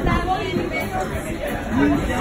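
People talking: indistinct background chatter of several voices.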